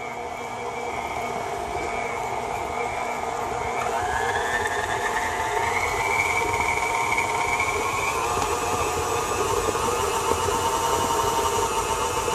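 KitchenAid Classic stand mixer running, its flat beater churning a thick frosting filling in a steel bowl: a steady motor whine that rises in pitch about a third of the way in and again past halfway.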